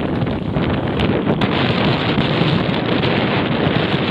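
Loud, steady wind rush buffeting a helmet-mounted camera's microphone as the wearer rides a bicycle along a trail.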